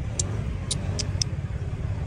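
Low, steady rumble of a slow-moving motor vehicle, with four short, high ticks in the first second or so.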